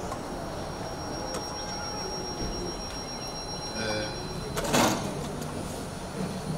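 Steady background noise with faint voices, broken about three-quarters of the way through by one short, loud rush of noise.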